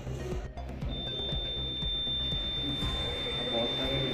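A single high, steady electronic beep from an electronic voting machine, starting about a second in and held without a break: the confirmation tone that a vote has been recorded.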